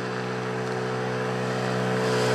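A motorcycle engine running at a steady pitch as the bike approaches, growing gradually louder.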